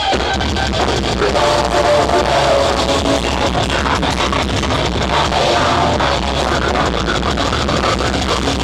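Deathcore band playing live: heavily distorted electric guitars over fast, dense drumming, loud and continuous, heard through the crowd.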